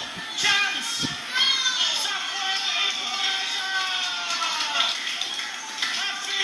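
Excited shouting and cheering as a goal is scored in a football match, with long, high yells that fall in pitch through the middle.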